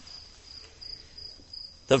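Crickets chirring steadily in the background as one faint, high-pitched continuous tone. A man's voice starts again near the end.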